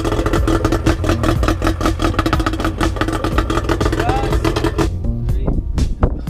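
Background music with a fast, steady beat and a held melody; the melody drops out about five seconds in while the beat carries on.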